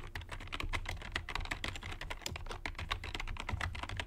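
Computer keyboard being typed on quickly, a fast run of key clicks as an email address is entered.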